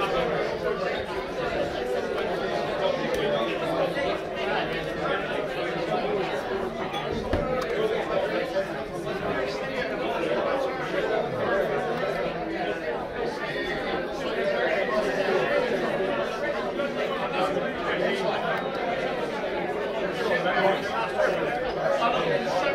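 Indistinct chatter of many voices in a busy pub, a steady babble with no one voice standing out.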